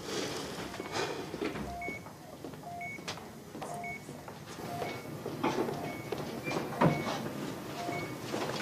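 Hospital patient monitor beeping about once a second, each beep a short steady tone, some low and some higher. Soft knocks and rustling go on underneath, with a sharper knock about seven seconds in.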